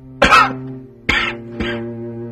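A man coughing three times in short, harsh bursts; the first is the loudest. Soft background music with long held notes plays underneath.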